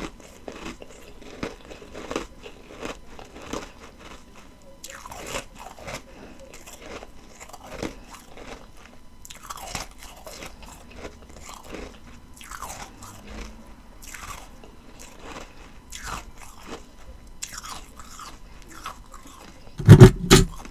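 Close-miked chewing of a mouthful of ice: a steady run of crisp, gritty crunches, about one or two a second, with a sharp, much louder crack right at the very end.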